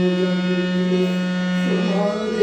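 Harmonium holding a long sustained chord, its reeds sounding steadily.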